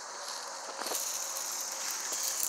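A steady, high-pitched chorus of insects outdoors, growing louder about a second in.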